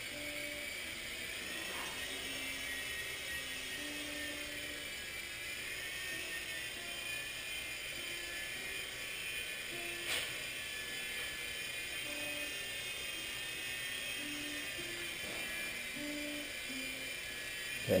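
Blade mCX micro coaxial helicopter hovering, its small electric motors and rotors giving a steady high whine that wavers slightly in pitch. There is a single click about ten seconds in.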